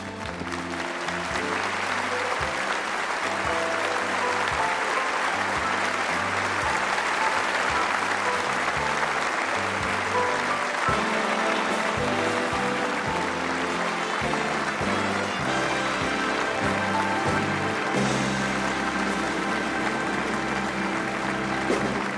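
An audience applauding steadily over a band playing music with a bass line moving in steps. The applause swells in within the first second.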